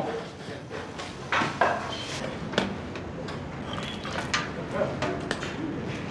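Scattered knocks and clanks of firefighting equipment being picked up and handled, with faint voices in the background.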